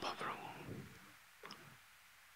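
A pause in a man's speech: the faint tail of his voice dies away in the first second, a single faint click comes about a second and a half in, and then there is near silence.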